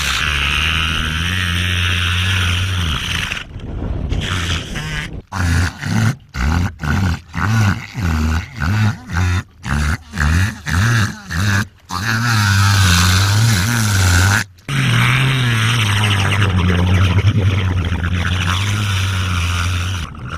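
Wild orca vocalizing in imitation of a speedboat engine: a loud, low, steady droning tone, broken in the middle into a string of short pulses about two a second, then held steady again.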